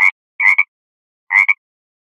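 A frog croaking: three short calls, each in two quick parts, a little under a second apart.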